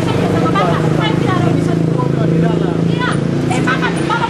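A motorcycle engine idling steadily, with several people's raised voices over it.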